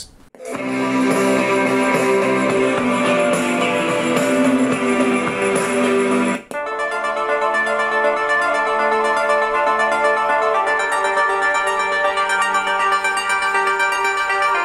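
Guitar music played through the small Bluetooth speaker in the base of an iHome Aquio speaker bottle, starting just after play is pressed. About six and a half seconds in it breaks off sharply and a different tune carries on.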